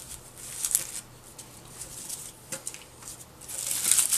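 Fingers picking and rubbing dry, papery outer skin and dead leaf off amaryllis bulbs in a pot of soil: soft rustling with a couple of brief clicks, growing louder near the end.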